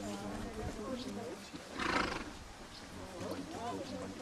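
A horse snorts once about halfway through: a short, breathy blow without pitch, over faint voices.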